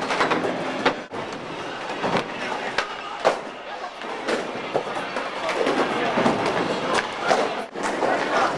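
Skateboard wheels rolling on a rink floor, with sharp board clacks every second or so, over the chatter of a watching crowd.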